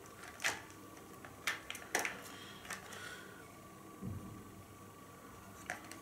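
A few light plastic clicks and taps as hands handle a DJI Phantom quadcopter and its camera gimbal, with a faint steady high tone underneath and a brief low bump about four seconds in.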